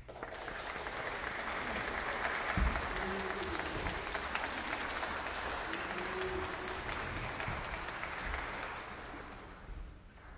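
Audience applauding: the clapping starts suddenly, holds steady and dies away near the end, with one low thump about two and a half seconds in.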